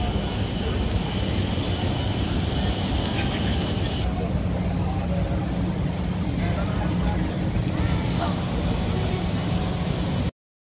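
Busy city street ambience: passers-by talking over a steady low rumble of traffic and crowd noise, changing character about four seconds in.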